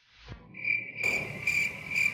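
Cricket chirping: a high, steady chirp that starts about half a second in and pulses regularly about twice a second.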